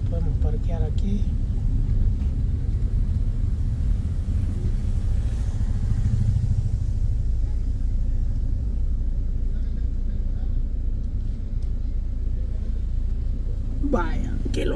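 Steady low rumble of a car's engine and tyres, heard from inside the cabin as the car drives slowly along a street.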